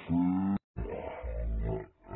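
A man's voice shouting through a megaphone: a loud call in the first half-second, a brief break, then more rough shouting that fades near the end.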